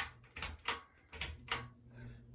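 A 42-inch ceiling fan just switched to high: a steady low motor hum with about five sharp clicks a few tenths of a second apart.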